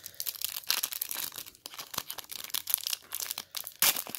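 Foil trading-card pack wrapper crinkling and tearing as it is pulled open by hand: a run of irregular crackles, with a louder rip near the end as the pack gives way.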